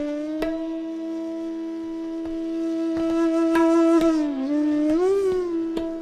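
Bansuri (bamboo flute) holding one long note in slow-tempo Raag Malkauns. The note dips slightly a little past the middle, then bends up with a waver before settling back. A few sparse tabla strokes sound under it.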